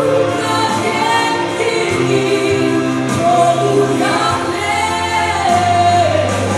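A woman singing a gospel song live into a handheld microphone over a backing accompaniment with a steady bass line. She holds long, wavering notes.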